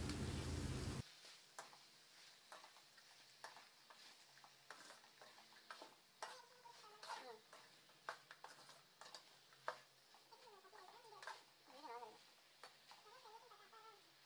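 Faint clinks and scrapes of a metal ladle against an aluminium kadai as raw chicken pieces are tossed and mixed. From about six seconds in, an animal's faint wavering calls recur in the background.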